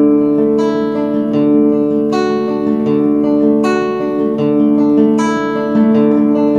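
Nylon-string classical guitar fingerpicked in a slow, even arpeggio over a held Bm7 chord. Single notes are plucked about every three quarters of a second and ring on into each other.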